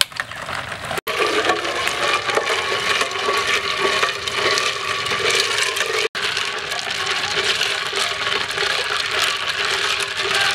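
A metal spoon stirring ice cubes through carrot juice in a glass jar: a continuous clatter of ice clinking against the glass and the spoon, with two brief dropouts.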